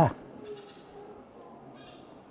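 A man's spoken phrase ends with a falling pitch just at the start, followed by a pause of faint room tone through the church's sound system.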